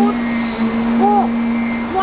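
A steady mechanical drone holding one low tone under a noisy hiss, with brief fragments of a woman's voice about a second in.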